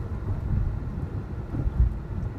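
Low, uneven road and tyre rumble inside the cabin of a Tesla Model S electric car moving at about 30 mph, with no engine note.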